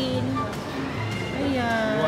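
Busy amusement-arcade din: electronic jingles and gliding sound effects from the game machines, mixed with voices.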